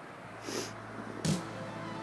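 Low outdoor background hiss with a couple of brief soft sounds, while faint music comes in near the end.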